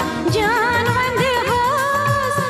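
South Asian film-style song: a high voice sings a wavering, ornamented melody over a steady drum beat, the voice coming in about a third of a second in.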